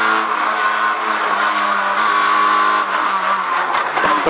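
Fiat Seicento Kit Car's four-cylinder engine running hard at high, near-steady revs, heard from inside the cabin over road and tyre noise; the pitch dips slightly near the end.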